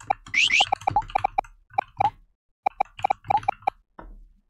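Rapid keystrokes on a computer keyboard, each a short hollow click with a ringing pitch, coming in irregular runs of several a second as a phrase is typed. About half a second in there are two quick rising squeaks.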